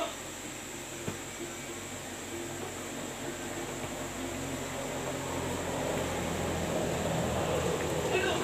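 A steady low hum, then the noise of a motor vehicle growing louder through the second half and still loud at the end, with a single faint click about a second in.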